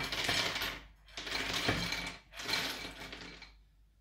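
Soya chunks tipped from a glass bowl into a ceramic bowl in three pours, a clattering rush each time, fading out near the end.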